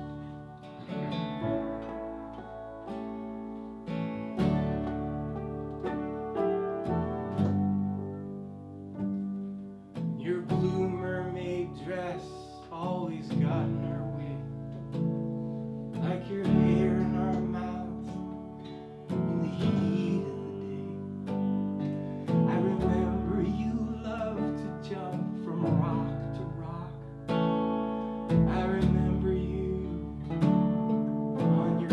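Live folk band playing: strummed acoustic guitar over upright bass, piano and a second guitar, with a man singing lead from about ten seconds in.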